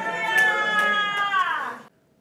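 A single voice holding one long, drawn-out vowel sound for nearly two seconds, sagging slightly in pitch at the end before cutting off abruptly into silence.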